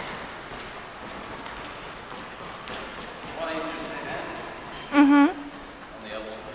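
A person's voice: faint talk around the middle, then a short, loud hummed or grunted vocal sound, rising at its end, near the end.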